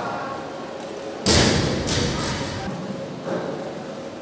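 A loaded barbell dropped from overhead onto the lifting platform: one loud thud about a second in, then two smaller bounces.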